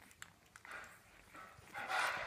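Two-week-old French bulldog puppies nursing from their mother: small wet suckling clicks and faint squeaks, then a louder breathy snuffle near the end.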